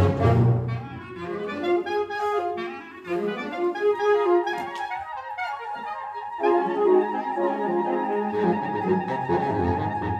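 Concert wind band playing live: a loud full-band passage falls away about a second in to a lighter, quieter passage, and a held high note enters a little past the middle.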